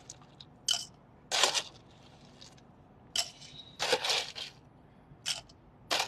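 Ice cubes lifted with metal tongs from a stainless steel ice tray and dropped into a glass: about six separate clinks and scrapes of ice against metal and glass.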